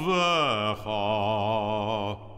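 A man's voice chanting a Hebrew Sabbath prayer line in cantorial style. A phrase slides down in pitch, then after a short break one long note is held with a steady vibrato.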